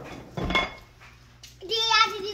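A brief thump or rustle about half a second in, then a child's voice starting near the end.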